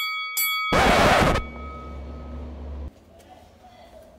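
Edited-in transition sound effect over a title card: two quick bell-like tones, then a short loud burst of noise. A low hum follows and cuts off suddenly about three seconds in.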